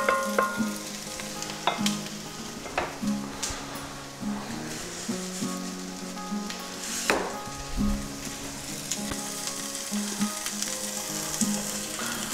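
Diced onion and garlic sizzling steadily in olive oil in an enamelled pot, with a few sharp knocks of a wooden spoon against the pot, the strongest about seven seconds in.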